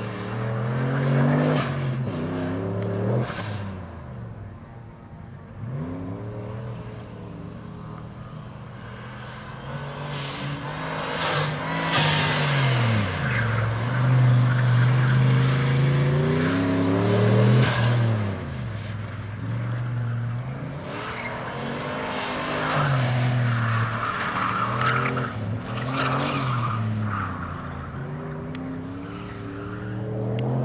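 Dodge Dakota pickup's engine revving up and falling off again and again as it is driven hard around tight cone turns, with short tyre squeals and scrubbing in the corners. The loudest stretch comes in the middle, about halfway through.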